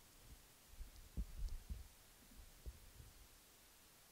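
Faint, irregular low thuds of a man's footsteps and his sitting down at a table, clustered between about one and two seconds in, with one more near three seconds.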